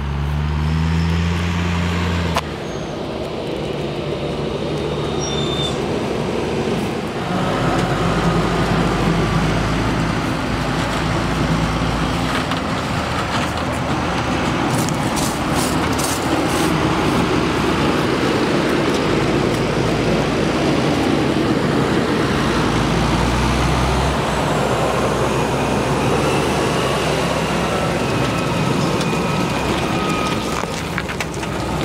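Fendt Vario 820 tractor's six-cylinder diesel engine pulling a loaded slurry tanker, rising in pitch as it accelerates over the first two seconds, then running steadily under load with tyre and driveline noise. The sound changes abruptly several times.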